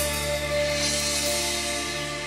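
Live gospel worship band music between sung lines: sustained keyboard chords holding steady, with no voice.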